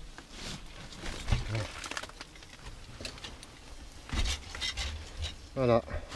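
Glass-wool insulation and papery German wasp nest being pulled and handled by a gloved hand: irregular rustling and crackling with a few dull knocks.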